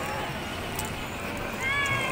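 Steady outdoor background noise, then a short, high-pitched cry near the end.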